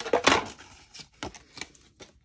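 Clear acrylic cutting plates, cardstock and thin metal dies being handled on a die-cutting machine: a short rustling scrape of card and plastic, then a few light clicks.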